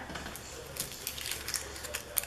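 Hands handling paper and small craft embellishments on a table: soft rustling with a scatter of light ticks and clicks, busier in the second half.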